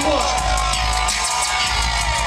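Live band playing a hip hop groove on drum kit, bass guitar and electric guitar, with an even beat.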